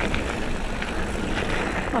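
Mountain bike rolling fast along a packed dirt trail: tyre and drivetrain noise with a low wind rumble on the bike-mounted microphone and a few light clicks and rattles from the bike.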